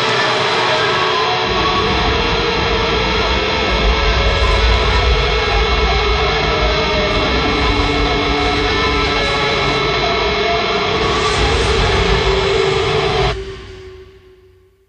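Heavily distorted melodic hardcore band music: a dense, sustained wall of sound with a deep low end. It cuts off abruptly near the end, leaving one held note that fades away.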